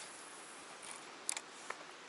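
Faint clicks from a baitcasting rod and reel being handled, a short cluster of sharp ticks a little past a second in and one more just after, over a low steady hiss.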